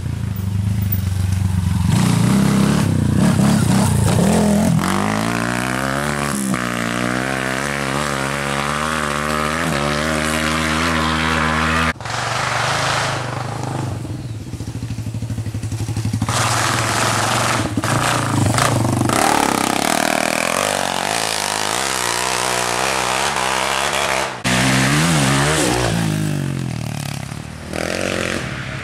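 Enduro dirt bike engines revving up and dropping back as riders come along the trail, the pitch climbing and falling with each throttle and gear change. The sound breaks off suddenly about 12 seconds in and again near the end, as the next bike comes through.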